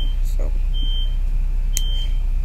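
A high electronic beep repeating about once a second, each beep about half a second long, over a constant low hum.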